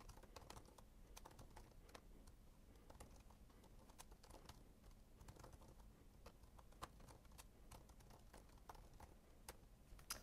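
Faint typing on a computer keyboard: scattered, irregular keystrokes as code is entered, with one slightly louder key press about two-thirds of the way through.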